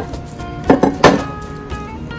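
Background music with steady tones; a little under a second in, two or three sharp knocks and squelches come from hands kneading a butter-and-paste marinade in a ceramic bowl.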